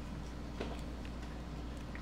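A steady low hum with a faint click about half a second in: light handling as heat-shrink tubing is slid onto a USB charger cord.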